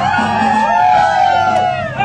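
Live band playing a disco cover: a bass line under one long held, slightly wavering note lasting most of the two seconds.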